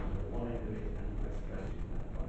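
Muffled, indistinct speech in a meeting room over a steady low rumble, with a short click right at the start.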